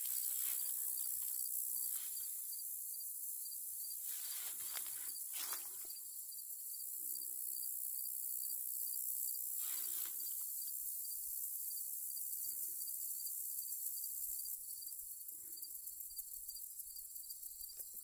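Steady high-pitched chorus of field insects such as crickets, with a faint evenly repeating chirp beneath it. A few soft rustles come and go over it.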